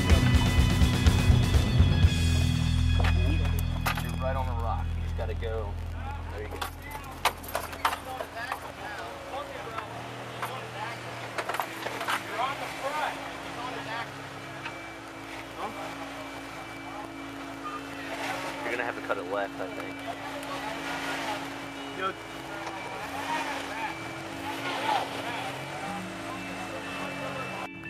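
A Jeep Wrangler's engine running at low revs as the Jeep crawls over rocks, a steady hum with people's voices around it. Music at the start fades out over the first several seconds.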